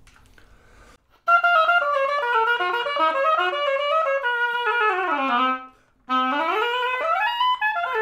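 Oboe played on a Jones Double Reed medium-hard commercial reed as a reed test: a phrase of quick notes starting about a second in and ending in a falling run, then, after a short breath, a run that climbs and falls back down.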